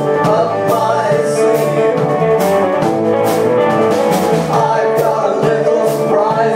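A live three-piece rock band playing: electric guitar, bass guitar and drum kit, with regular cymbal hits over a steady beat.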